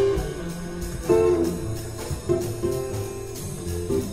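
Live jazz quintet in a double bass solo: plucked double bass notes with light accompaniment and steady cymbal strokes from the drum kit.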